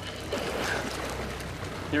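Outboard motors running low, a steady hum, with water washing and churning around the stern as the boat backs down on a hooked marlin.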